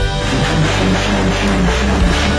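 Background music led by guitar, loud and steady.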